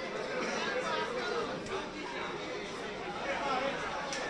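Crowd chatter: many people talking at once, a steady babble of overlapping voices with no single voice standing out.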